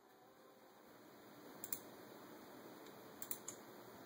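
Near silence with a faint steady hiss and a few soft clicks of a computer mouse: one a little under two seconds in and a quick pair near the end.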